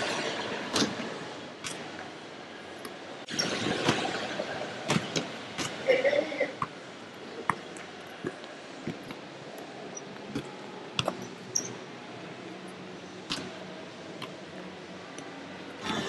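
A ball being kicked and bouncing during a soccer-tennis game on a pool deck: scattered sharp knocks over steady background hiss, with a brief voice about six seconds in.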